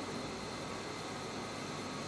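Room tone: a steady low hiss with a faint hum underneath, unchanging throughout.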